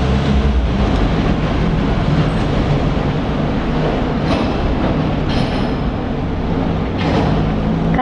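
Motorhome engine running steadily, a low hum under a broad rushing noise.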